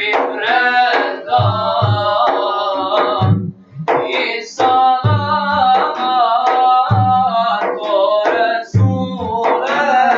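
A group of young men singing an Islamic devotional song together, with deep beats on large hand-struck frame drums. The singing breaks briefly about a third of the way through.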